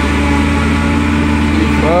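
Farm tractor engine running steadily under load while driving a forage harvester that chops tall sorghum and blows it into a wagon: a constant low drone.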